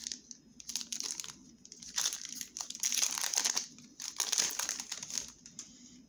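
Foil wrapper of a Pokémon trading card booster pack crinkling as it is handled and torn open, in several short bursts.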